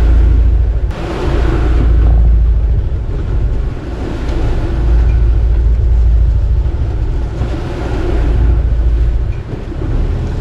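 Wind buffeting the microphone in gusts that swell and ease every few seconds, over the rushing hiss of sea water.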